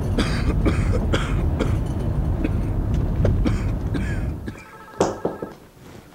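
A man coughing repeatedly in short fits over the steady rumble of a moving van. The rumble stops about four seconds in, and a brief knock follows in a quieter room.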